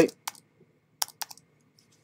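Typing on a computer keyboard: a couple of quick keystrokes just after the start, then a cluster of three or four about a second in.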